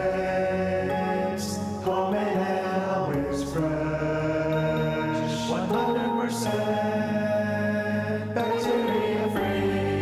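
A short advertising jingle: slow vocal music in long held chords that change every second or two.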